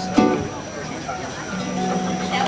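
Accordion and ukulele noodling before a song starts: the accordion holds a low note at the start and again for the last half second, with scattered ukulele plucks. A short burst of voice comes just after the start.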